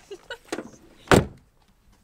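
A car door slamming shut once, about a second in, with a few lighter knocks and rustling before it.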